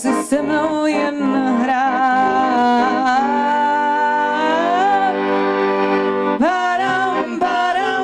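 A woman singing with a piano accordion and a bowed double bass. She holds a long note through the middle that rises at its end, then starts a new phrase about six and a half seconds in.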